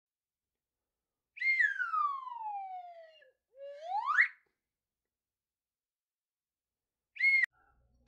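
Whistle sound effect on a channel intro. One long note slides downward, then a short note quickly slides back up. Near the end comes a brief higher note and a sharp click.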